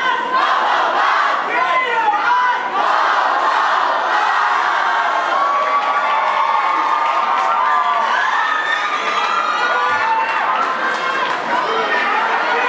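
A large crowd of young people cheering and shouting together, many voices at once with drawn-out yells and whoops, going on without a break.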